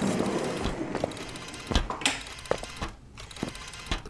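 Sound effect of a door being opened: a rattling latch-and-handle mechanism that fades out over about three seconds, with several sharp knocks along the way.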